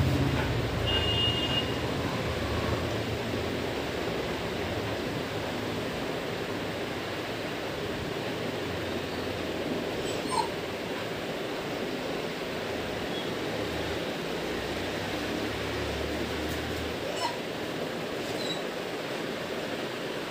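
A dog whimpering in a few short, faint high squeaks over a steady background hiss and low hum.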